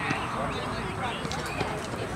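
Indistinct chatter of several voices overlapping, like players and spectators talking around a baseball diamond; no words stand out.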